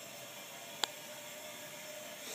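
Faint steady hiss of a toilet tank refilling just after a flush, with a single sharp click a little before halfway.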